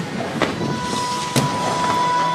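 Fireworks display: two sharp bangs about a second apart over the show's music, with a steady held note coming in about half a second in.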